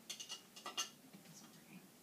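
A quick cluster of light plastic clicks and clatters in the first second: a small plastic X-Men action figure being stood up on the rug's X tile and tipping over.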